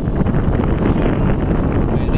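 Wind buffeting the microphone on a small open boat crossing a river: a loud, steady rumble with no breaks.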